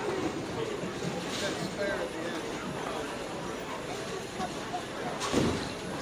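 Bowling alley din: a steady rumble of balls rolling down the lanes, with background chatter. A brief louder noise comes about five seconds in.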